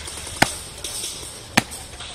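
Two sharp smacks a little over a second apart, the loudest sounds, from the dancer's hits, slaps or stomps.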